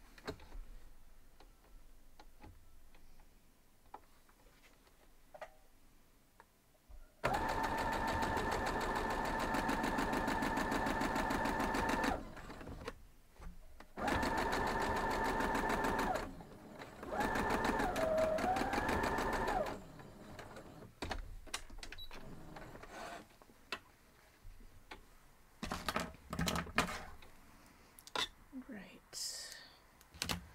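Electric sewing machine stitching a seam in three runs of a few seconds each, with short pauses between them. Its steady motor hum dips in pitch briefly in the last run as it slows. Quiet fabric handling and small clicks come before and after.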